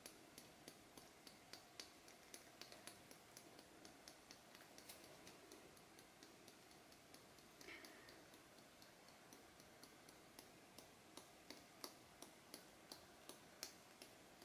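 Near silence with faint, irregular ticks, a few a second: chunky glitter being shaken out of a small shaker bottle onto a canvas.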